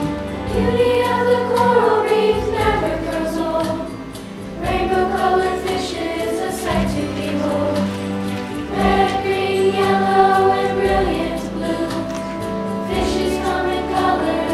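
Children's choir singing a song together over a steady instrumental accompaniment, with a brief lull about four seconds in before the voices come back in.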